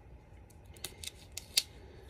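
Scissors snipping into a toy's packaging: about four quick sharp snips in the second half, the last the loudest.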